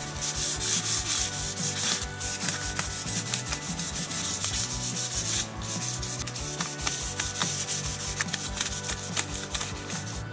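Folded 320-grit sandpaper rubbed back and forth by hand over a painted 1966 Mustang grille, a continuous scratchy hiss of short strokes. It is scuffing down the chipped paint edges before a repaint.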